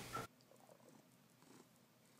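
A man's voice trails off about a quarter second in, then near silence with a very faint cat purr.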